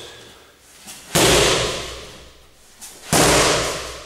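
Two roundhouse kicks hitting a handheld kick shield, two heavy whacks about two seconds apart, each with a long echoing tail.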